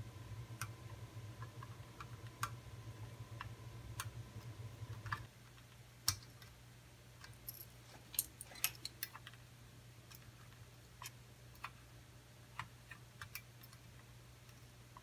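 Faint scattered clicks and taps of tools and small parts being handled at a workbench. A low hum runs under them for the first five seconds or so and then cuts off suddenly.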